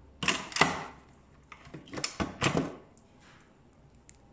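Stainless steel lid of an electric pressure cooker being twisted open and lifted off the pot: several sharp metal clicks and clunks over about two and a half seconds.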